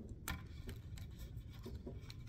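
Faint handling clicks and taps from a GoPro action camera and its mount being worked by hand, with one sharper click just after the start.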